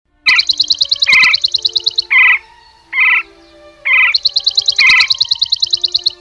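Birdsong: two bursts of a rapid, high-pitched trill, each under two seconds, with shorter, lower chirps repeating about once a second between and over them.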